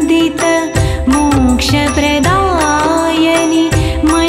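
A female voice singing a Sanskrit devotional stotram, the melody bending and gliding between held notes, over a steady percussion beat and sustained instrumental tones.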